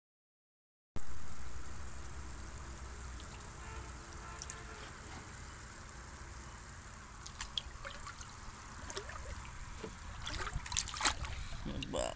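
Shallow pond water trickling and splashing around a hand holding a goldfish at the surface, starting about a second in after silence; the small splashes grow busier toward the end.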